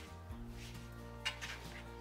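Soft background music with long held notes, and one faint light tap about a second in.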